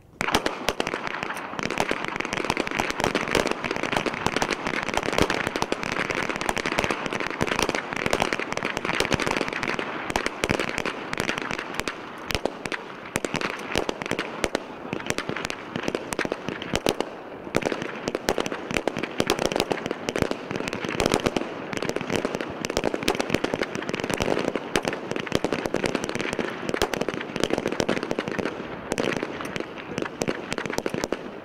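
Many pistols firing along a firing line, shots overlapping in a dense, continuous crackle that starts abruptly right at the outset and runs on without pause.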